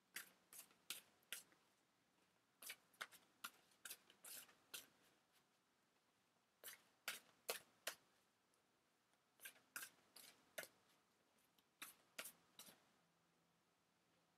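A deck of tarot cards being shuffled by hand: faint, quick card flicks and slaps in about five short bursts, with pauses of a second or two between them.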